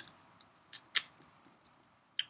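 A single sharp click about halfway through, with a fainter tick just before it, in an otherwise quiet room.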